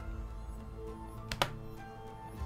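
Background music with steady held notes, and a single sharp click about a second and a half in.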